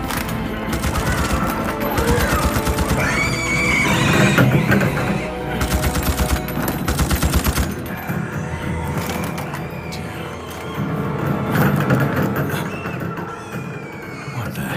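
Film battle soundtrack: rapid automatic rifle fire in long bursts, mixed with high screeching creature cries and a music score. The gunfire stops about halfway through, leaving the score and the screeches.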